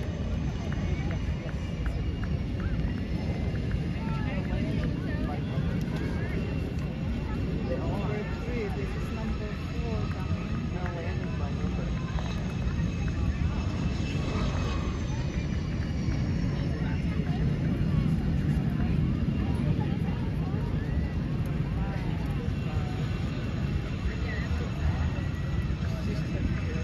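US Navy Blue Angels F/A-18 jet taxiing, its turbofan engines giving a steady low rumble with a high, slowly falling whine. Indistinct crowd chatter runs underneath.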